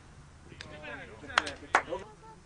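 Football being kicked on a pitch: sharp smacks about a second and a half in, two close together and then a louder one, with faint voices of players calling just before.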